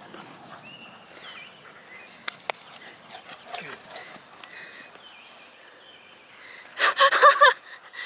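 Quiet outdoor background on a park lawn with a few faint high chirps and light clicks, then a short, loud, broken vocal burst near the end.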